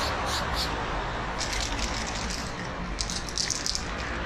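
Aerosol spray paint can in use: short hissing spray bursts at the start, then the can shaken twice, its mixing ball rattling fast, about a second and a half in and again around three seconds in.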